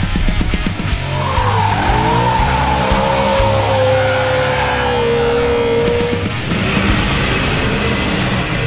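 A car's tyres squealing as it slides with smoke coming off them. The squeal starts about a second in, dips in pitch, then holds steady and stops about six seconds in. Loud rock theme music plays underneath.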